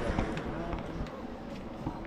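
Indistinct background voices in a shop, with scattered light clicks and a few low thumps.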